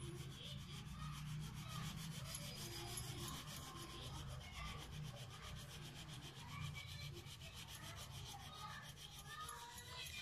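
Crayon rubbing back and forth on paper as an area of a drawing is coloured in: a faint, continuous scratchy friction, over a low steady hum.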